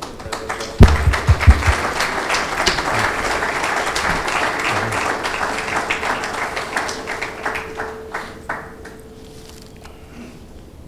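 Audience applauding in a hall, starting right away, holding steady, then thinning out and dying away near the end. A few heavy thumps come about a second in.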